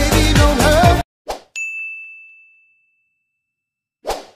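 Upbeat dance-pop intro music that stops abruptly about a second in, followed by a brief swish and a single bell-like ding that rings out and fades over about a second.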